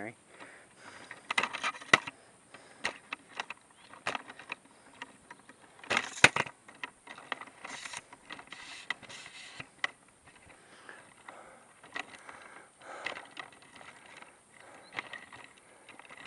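Handling noise from a camera being panned on its tripod: irregular clicks, scrapes and rustles, with a sharper pair of knocks about six seconds in.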